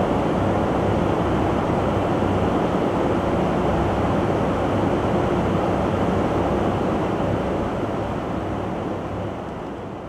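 Steady rush of airflow and jet engine noise inside an in-flight aerial refuelling tanker, with a faint low hum under it, fading down over the last two seconds.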